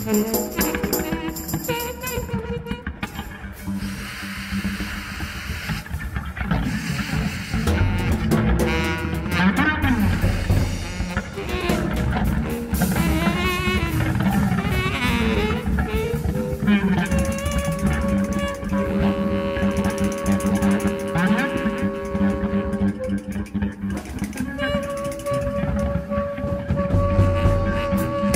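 A jazz trio playing: saxophone over drum kit and keyboards, with long held notes in the second half. A laugh and a spoken 'go' come right at the start.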